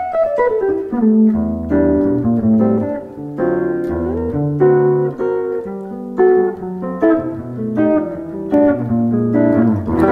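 Electric guitar, a PRS Custom 24, played through a Boss WL50 wireless unit with its long-cable emulation on. It plays a clean melodic run of single notes and chords with a couple of slides, and the tone is a little muddier.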